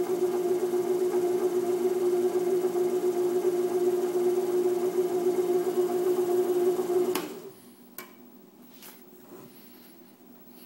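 Wood lathe motor running at about 500 rpm with a steady, even hum. About seven seconds in it is switched off and quickly winds down, and a couple of faint knocks follow.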